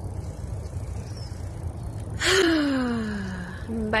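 A woman's long voiced sigh about halfway through, starting with a breathy rush and falling steadily in pitch for about a second and a half, over a steady low rumble.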